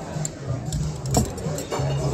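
Noisy restaurant dining room: background music and diners' chatter, with a few sharp clinks of tableware, the loudest about a second in.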